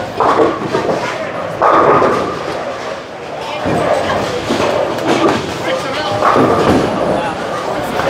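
Indistinct voices and short exclamations over the steady background noise of a busy bowling alley.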